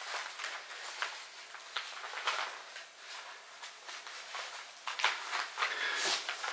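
Soft rustling and scuffing of a long fabric panel being shifted and smoothed by hand on a hardwood floor, with small scattered ticks and taps.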